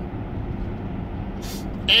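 Steady low rumble of a car's cabin, with a short burst of noise about a second and a half in, just before speech resumes.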